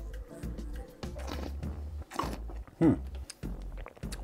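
A person sipping red wine from a glass and tasting it: soft slurping and mouth sounds, with a couple of short vocal sounds about two and three seconds in.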